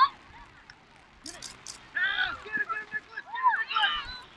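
Several voices shouting on a football field as a play runs, with high, pitch-bending calls. The calls grow louder from about halfway through. Three short hissing sounds come about a second in.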